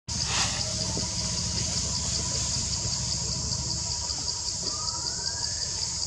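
A steady, high-pitched insect drone that pulses about three times a second, over a low rumble, with a faint rising whistle near the end.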